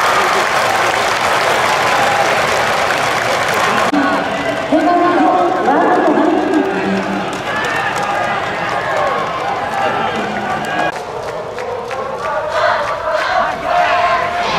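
Baseball crowd in the stands cheering and applauding, densest in the first four seconds, then a mix of spectators' shouting voices and scattered clapping.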